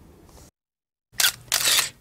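Camera shutter sound effect: a short click about a second in, followed at once by a longer shutter sound, coming out of a moment of dead silence.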